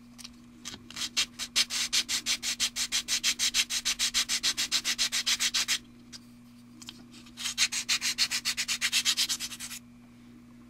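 Sanding block rubbed rapidly back and forth over a plastic 1/25-scale model engine half, about six scraping strokes a second. It comes in two runs, from about a second in to nearly six seconds, then again from about seven seconds to near the end.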